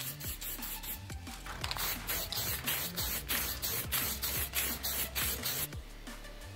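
Aerosol spray-paint can spraying paint, heard under background electronic music with a steady beat.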